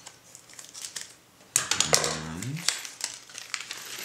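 Plastic packaging of Traxxas connectors being crinkled and torn open by hand: a few small rustles at first, then a louder stretch of crinkling from about one and a half seconds in.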